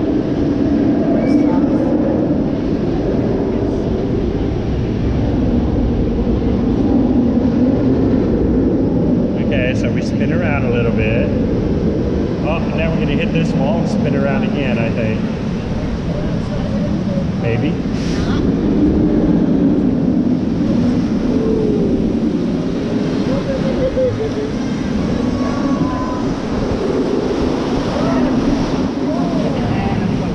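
Water rushing and churning around a round raft on a river rapids ride, with steady wind buffeting on a body-mounted action camera. Riders' voices come through, with a few short high squeals in the middle.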